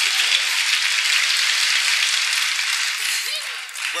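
Studio audience applauding a correct answer, fading away near the end.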